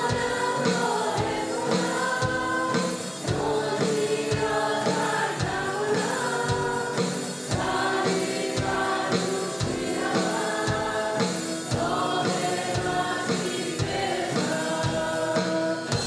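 Live Persian Christian worship song: a woman singing the lead over electric and acoustic guitars and a drum kit keeping a steady beat.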